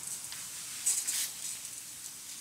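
Lawn sprinklers spraying water, a faint steady hiss with a brief louder surge about a second in.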